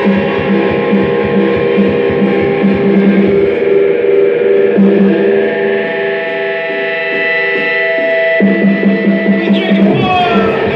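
Rock music led by electric guitar over a steady beat, with no singing in this passage. The bass drops out for several seconds in the middle and comes back shortly before the end.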